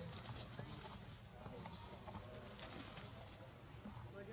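Outdoor ambience in undergrowth: a steady high insect drone with faint bird calls, and brief rustles of grass and leaves through the first three seconds as monkeys scuffle.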